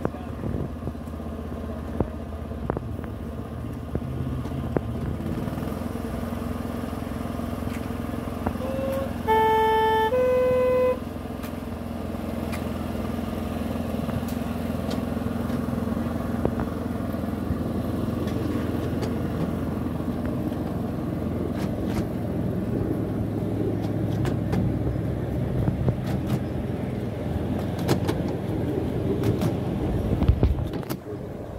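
Miniature railway locomotive's horn sounds two short notes about nine seconds in, a lower one then a higher one. The train then pulls away: a steady low running noise and the rumble and clicking of wheels on the small-gauge track, growing louder.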